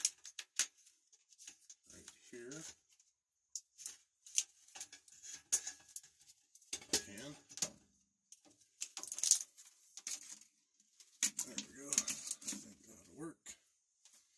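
A man muttering a few words in short stretches, with scattered sharp clicks, knocks and rustles from handling the sump pump and its pipe as it is set down.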